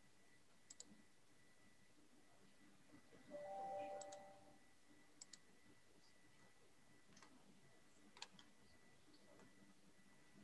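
Near silence with faint computer mouse clicks, several in quick double-click pairs. A brief faint steady tone lasts about a second near the middle.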